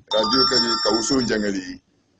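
A man preaching into a microphone, with steady high electronic ringing tones over his voice like a phone ringtone. The sound cuts out completely just before the end.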